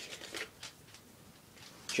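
A few faint rattles and clicks from a small spice jar being handled and shaken over a dish, in the first second or so.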